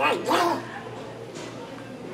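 A boy's voice in a few short, pitch-bending syllables during the first half second, then only the low steady background of a school hallway.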